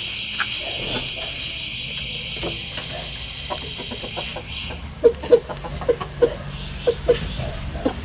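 Chickens feeding, giving a series of short, low clucks through the second half. Under them, a steady high buzz runs through the first half and stops about halfway.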